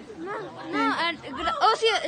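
Indistinct chatter of fairly high-pitched voices, with no clear words.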